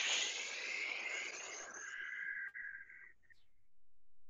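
A long, slow exhale blown out through the mouth close to the microphone: the four-count breath-out of box breathing, fading away after about three seconds.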